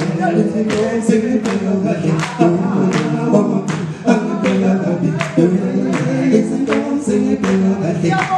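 Male vocal group singing a sangoma song in chorus. Sharp hand claps keep the beat, nearly three a second.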